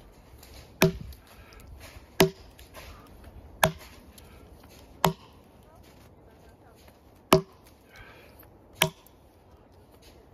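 Single-bit axe chopping into a log to buck it: six sharp strikes about one and a half seconds apart, with a slightly longer pause before the fifth, each with a brief pitched ring from the wood.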